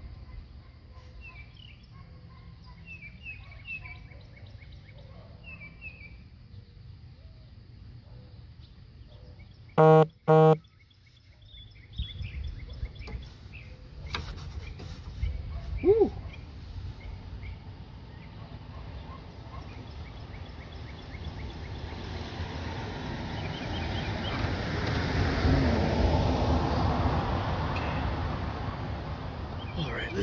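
Small birds chirping in the background, a man's short loud laugh about ten seconds in, then a rushing noise that swells and eases off near the end.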